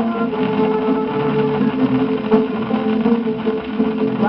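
Instrumental passage of a 1940 samba-canção played by a regional ensemble, led by plucked guitars, reproduced from a worn Victor 78 rpm shellac record with steady surface hiss and a dull, narrow old-recording sound.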